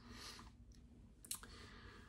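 Near silence: room tone, with one faint short click a little past halfway.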